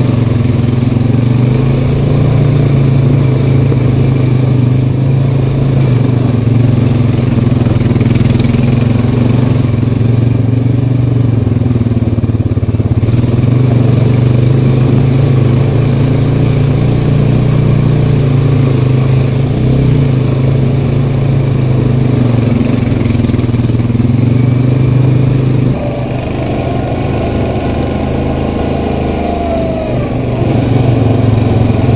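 Honda Rancher 420 ATV's single-cylinder engine running steadily as it is ridden up a dirt trail, a loud, even drone heard from the rider's seat. About four seconds before the end the sound changes suddenly, duller and a little quieter, as the audio switches to a second ATV, a Yamaha Kodiak 700, running on the trail.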